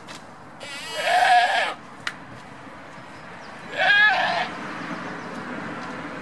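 Goats bleating: two loud, wavering bleats, the first about a second in and lasting about a second, the second shorter at about four seconds. A steady low background noise grows louder near the end.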